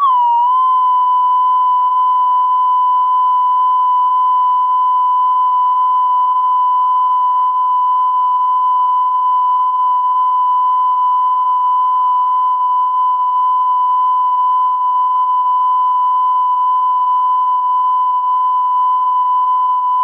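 Steady 1 kHz broadcast test tone sent with colour bars once the station has closed down for the night. It starts abruptly, its pitch wavers for about half a second, then it holds one unwavering pitch.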